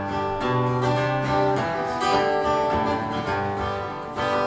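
Two acoustic guitars playing a talking-blues accompaniment, strummed chords over a low bass note that rings about half a second in.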